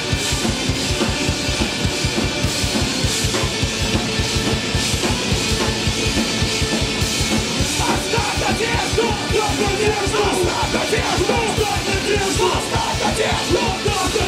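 Rock band playing live: distorted electric guitar, bass guitar and a drum kit driving a fast, steady kick-drum beat. Shouted vocals come in over the band about halfway through.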